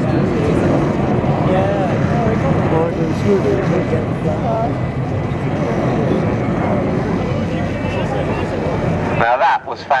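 Airbus A340-600 four-engine jet airliner flying low overhead: a loud, steady jet rumble from its Rolls-Royce Trent engines that drops away sharply about nine seconds in.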